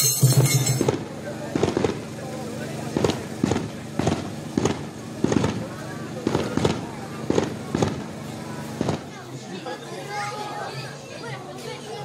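A string of sharp, irregular cracks, one or two a second, over crowd voices. They stop about nine seconds in and leave general crowd chatter. Festival music fades out about a second in.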